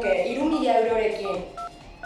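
Cordless phone keypad beeping as a number is dialled: a few short key tones, with a voice talking over them.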